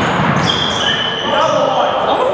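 Basketball being dribbled on a gym floor amid crowd voices in a reverberant hall, with high steady squeaks from about half a second in.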